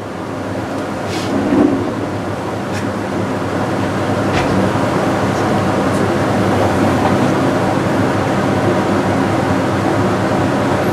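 Inclined elevator car running along its sloped track, a steady mechanical running noise with a low hum that builds over the first two seconds and then holds level, with a few faint clicks.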